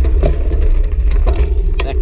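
Low rumble of wind buffeting a handlebar-mounted action camera's microphone as a bicycle rolls over a gravel path, with scattered sharp clicks and rattles from the tyres on the gravel and the bike.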